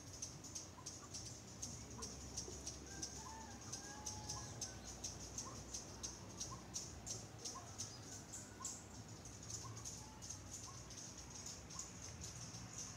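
Faint tropical forest ambience: a steady, high insect chorus pulsing rapidly, with scattered short bird calls and a few longer whistled glides.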